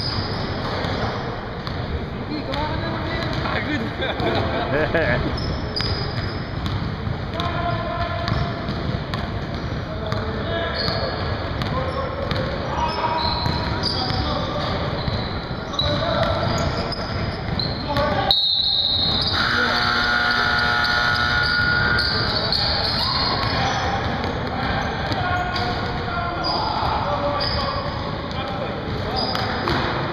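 Basketball game in a gym: the ball bouncing on the hardwood floor amid players' calls, echoing in the hall. About two-thirds of the way through, a held tone stands out for about three seconds.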